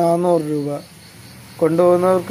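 A person speaking, pausing for about a second in the middle, over a faint steady high-pitched chirring of crickets.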